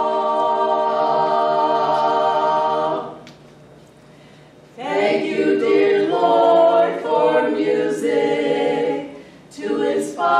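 Four women singing a cappella together: a held chord that breaks off about three seconds in, then after a short pause the singing picks up again in moving phrases.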